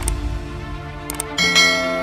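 A few quick clicks, then a bell chime about one and a half seconds in that rings on and slowly fades: the click-and-notification-bell sound effect of a subscribe-button animation, over a low rumble.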